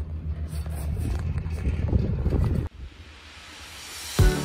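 Wind buffeting the microphone as a steady low rumble on a moving chairlift. It cuts off abruptly about two-thirds of the way in, leaving a faint hiss that slowly grows louder.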